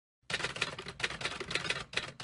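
Typing sound effect: a rapid run of keystroke clicks, starting about a third of a second in, with a brief pause near the end.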